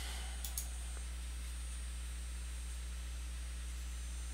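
Quiet room tone with a steady low electrical hum, and a faint computer mouse click about half a second in.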